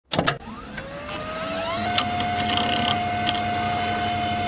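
Two sharp clicks, then a whine that glides up in pitch over about a second and a half and settles into a steady tone, with a few small clicks and blips over it: a motor-like spin-up sound effect.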